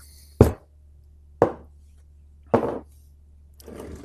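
Three sharp knocks about a second apart, the first the loudest, as a Mesa Boogie F30 amplifier's metal chassis is handled and turned around on a workbench, with a soft rustle of handling near the end.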